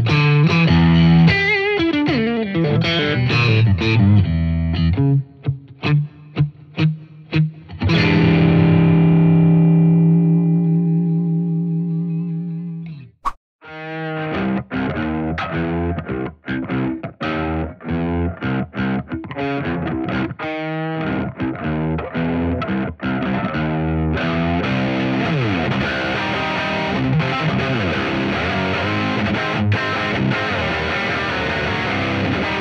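Distorted electric guitar played through a Positive Grid Bias Head modelling amp: riffs, a run of short chopped chords, then a chord left to ring out and fade. After a brief break comes a second, high-gain part of fast riffing with sudden stops, turning into denser continuous playing near the end.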